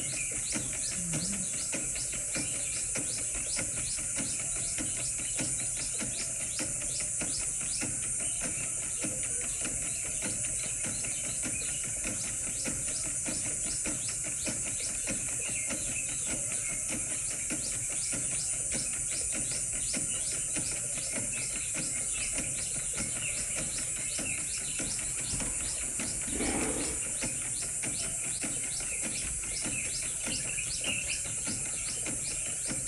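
Outdoor wildlife ambience: a steady high insect chorus with a fast, even pulsing and occasional bird chirps, and a short lower sound near the end.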